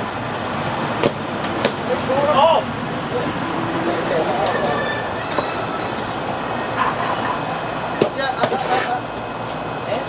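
Steady outdoor hiss with faint voices calling out and a few light, sharp knocks, about a second in and again near the end.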